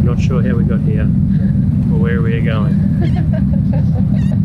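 Ferry under way: a steady low rumble from the vessel and the air moving across its open deck, with indistinct voices over it.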